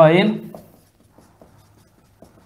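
Marker pen writing on a whiteboard: faint, scattered scratching strokes as letters are drawn.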